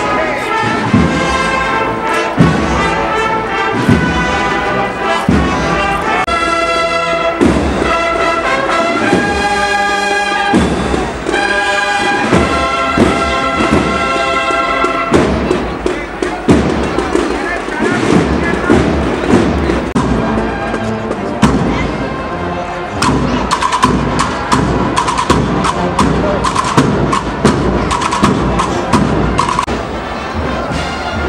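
Brass band playing a Holy Week processional march, with steady drum beats under the melody. About halfway through the tune gives way to a denser, noisier passage full of sharp drum strikes.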